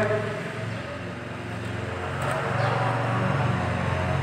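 A steady low hum, with faint scratches of a marker pen writing on a whiteboard.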